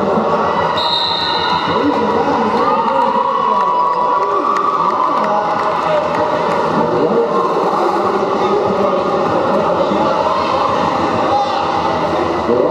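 Crowd noise in a large sports hall: many spectators' voices talking and calling out at once, with roller skates rolling and knocking on the wooden floor. A brief high whistle blast sounds about a second in.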